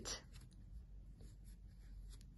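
Faint scratching and rustling of a metal crochet hook pulling chenille velvet yarn through stitches.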